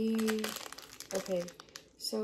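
Plastic wrapper of a Maruchan instant ramen packet crinkling as it is handled and opened. A short held hum of voice comes at the start and a brief vocal sound in the middle.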